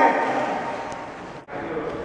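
Water splashing in an indoor pool, dying away over about a second and a half. It cuts off suddenly, leaving a quieter background.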